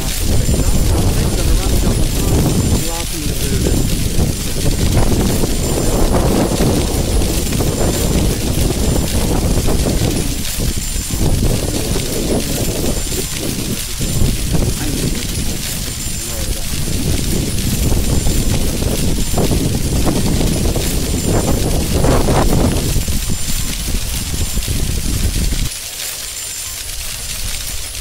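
A man talking, his voice muffled and partly buried under heavy wind rumble on the microphone.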